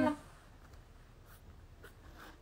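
The last ringing of an acoustic guitar chord fades out in the first moment. Then it is quiet apart from a few faint scratchy clicks and rubs.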